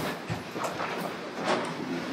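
A roomful of people settling back into their seats after standing: chairs shifting and scraping and feet shuffling, with a few scattered knocks over a steady rustle.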